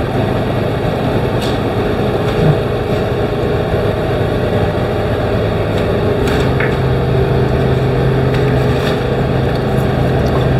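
Steady machine drone with a low hum that grows a little stronger about seven seconds in, with a few faint clicks and taps from handling a plastic paint mixing cup.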